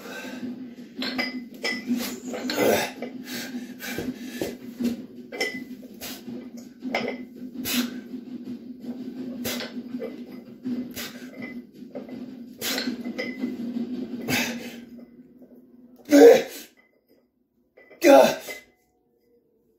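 Iron plates on a dumbbell clinking and rattling again and again as it is lifted, over a steady low hum. A louder burst comes near the end, then the sound drops out briefly.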